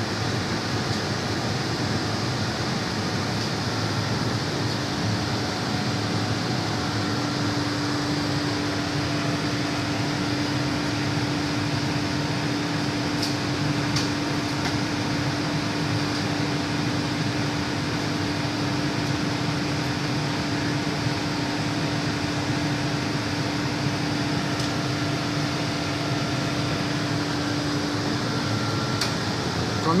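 A commercial cold room's 7 HP R22 refrigeration condensing unit running steadily, compressor and fan, freshly charged and pulling the room down toward its 0 °C cut-out. A steady low hum stands out from about eight seconds in until near the end.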